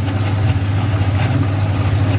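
Steady low hum with an even hiss from a machine running in the kitchen, unchanging throughout.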